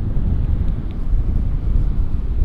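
Wind buffeting the microphone: a loud, steady low rumble with no clear pitch.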